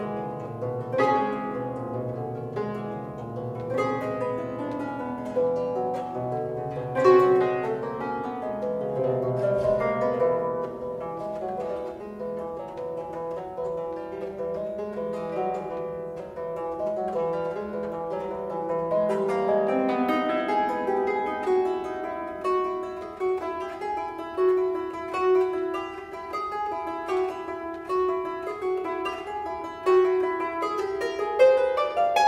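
A Baroque triple harp played solo: a continuous flow of overlapping plucked notes left ringing, tuned in quarter-comma meantone with pure major thirds. The plucks come faster and busier about two-thirds of the way through.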